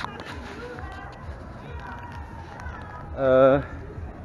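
A man walking outdoors, his footsteps thudding softly over a steady background of outdoor noise and faint distant voices. About three seconds in he gives one short hummed vocal sound, like an "ähm", before he speaks.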